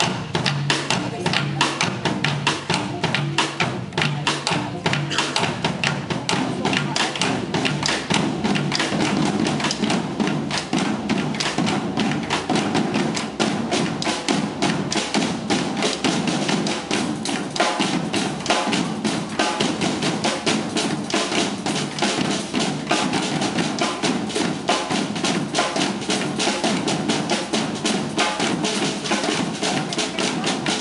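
A percussion ensemble drumming together: drum kits, snare drums, bongos and congas played in a dense, steady rhythm.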